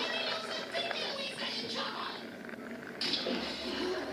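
Movie soundtrack playing from a television across a room: music mixed with dialogue and sound effects, with a rise in level about three seconds in.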